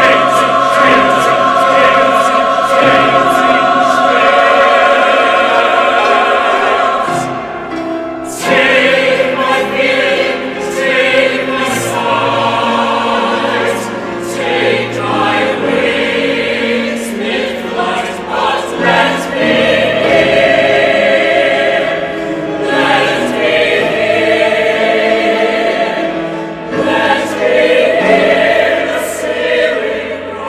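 Mixed SATB choir singing: held chords for the first several seconds, a brief drop about eight seconds in, then a sudden louder entry into a more active passage that carries on, with another short dip near the end.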